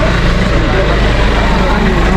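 Steady low rumble of a vehicle engine idling, with bystanders' voices talking over it.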